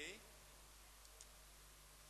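Near silence: faint steady background hiss with a low hum, and one faint click about a second in.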